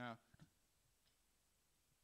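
Near silence: room tone, broken only by the tail of a man's voice at the very start and a single faint click a moment later.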